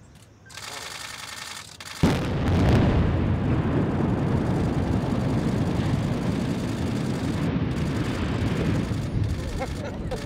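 Implosion of a concrete cooling tower: the noise rises about half a second in, then a sharp, loud blast comes about two seconds in, followed by a long rumble of the tower collapsing that fades slowly. Voices come in near the end.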